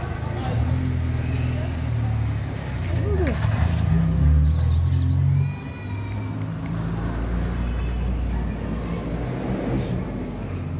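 Motor vehicle engine running close by, a low steady rumble that grows louder through the middle and drops away sharply about five and a half seconds in.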